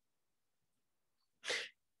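Near silence, then about one and a half seconds in a single short intake of breath by the speaker.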